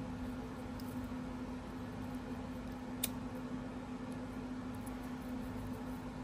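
Quiet room background with a steady low hum and one small click about three seconds in.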